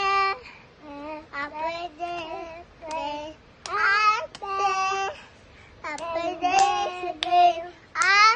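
Young children singing in high voices, in short phrases with some held notes.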